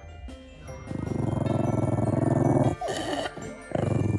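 A dog growling low and rumbling, in two long stretches: one about a second in and another near the end. Background music plays underneath.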